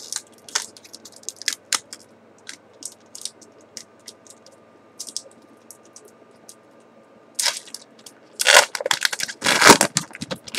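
A foil booster pack wrapper being handled: scattered small crinkles and crackles, then three louder tearing rustles in the last three seconds as the pack is ripped open.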